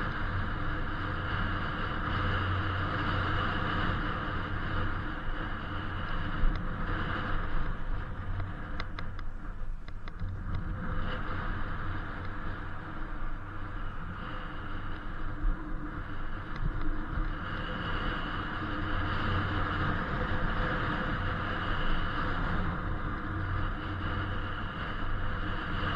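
Wind rushing over the camera microphone and tyre noise while riding an Inmotion V8 electric unicycle at street speed, with a faint steady high whine. The sound holds steady and dips briefly about ten seconds in.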